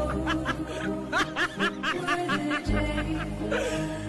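Repeated bursts of laughter, a quick run of short 'he-he' notes, over background music with a steady bass line.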